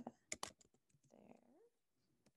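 Faint keystrokes on a computer keyboard, a handful of quick clicks in the first half second as text is typed.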